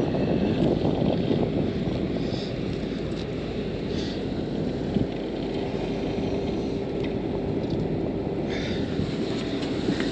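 Steady low rumble of wind buffeting the microphone, with a faint steady hum in the second half and a small knock about halfway through.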